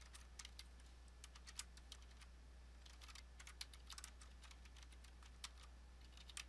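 Faint typing on a computer keyboard: quick, irregular key clicks with a short pause a little before the middle, over a low steady hum.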